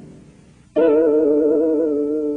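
Plucked-string instrumental music: a previous note fades out, then about three-quarters of a second in a chord is struck and rings on, its notes wavering slightly in pitch as they slowly die away.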